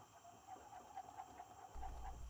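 Faint, repeated bird chirps, with a low steady hum coming in near the end.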